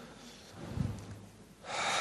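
A man draws an audible sharp in-breath near the end, just before speaking. About a second earlier there is a short, low vocal hum.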